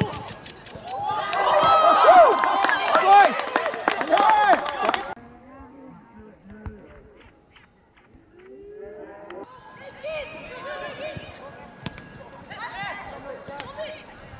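Several young voices shouting and calling out on a football pitch, loud for about four seconds and then cut off abruptly. After that come a few sharp knocks over a quiet stretch, then fainter calling voices.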